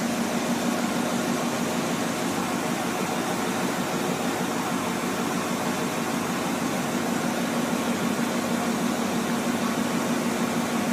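A steady mechanical hum with an even hiss behind it, holding at one level and pitch throughout.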